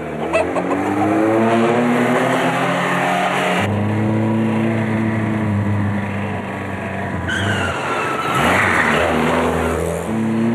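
Vintage saloon car's engine revving and accelerating hard, its pitch climbing, then running on at a steady note. A rising tyre squeal comes in over the engine past the middle.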